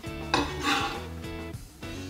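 Pieces of cut corn kernels dropping into a glass bowl onto other kernels: two brief rattles, about a third of a second and three-quarters of a second in, over background music.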